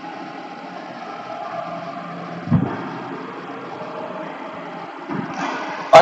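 Steady background hum and hiss with no clear source, with one short, dull low thump about halfway through.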